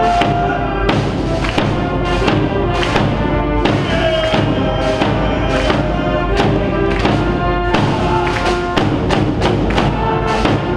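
Live brass band playing a marching cheer song, with a bass drum marking a steady beat about every two-thirds of a second.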